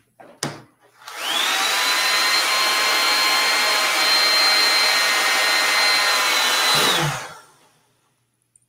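JCPenney handheld hair dryer clicked on, its motor whine rising to a steady pitch under loud rushing air for about six seconds, then switched off and winding down, blowing over a painting to dry the paint.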